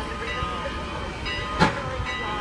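Crowd voices on a railway platform beside a working steam locomotive, with steady held tones underneath. One sharp clank about one and a half seconds in stands out as the loudest sound.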